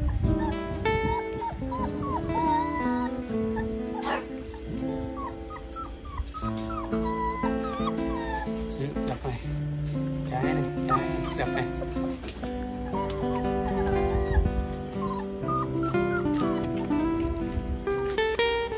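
Two-month-old Phu Quoc Ridgeback puppies whimpering and yipping a few times as they crowd a food pan, over acoustic guitar background music.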